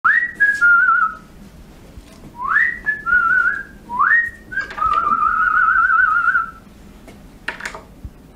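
A person whistling a tune in three phrases, each starting with a quick upward swoop and ending on a long warbling note, the last phrase the longest. A short clatter near the end.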